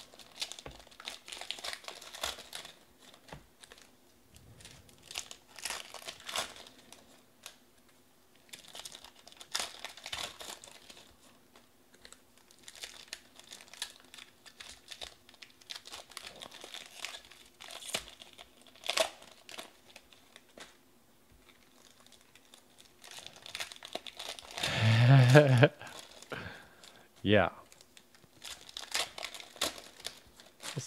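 Trading-card pack wrappers crinkling and tearing open while cards are pulled and handled, in a run of short, uneven rustling bursts. A voice sounds briefly about three-quarters of the way through and is the loudest moment.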